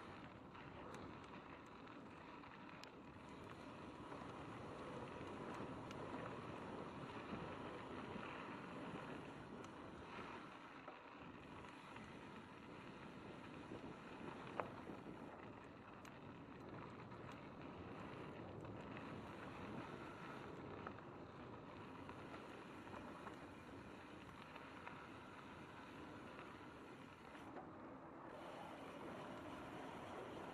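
Mountain bike rolling down a gravel flow trail, heard from a handlebar-mounted camera: a steady, fairly faint rush of tyre and wind noise with small rattles, and one sharp click about halfway through.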